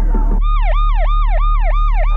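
Police-style yelp siren, its pitch sweeping quickly up and down about three or four times a second, starting about half a second in over a steady low hum.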